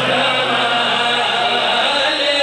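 Men's voices chanting a devotional recitation through a loudspeaker system, loud and unbroken.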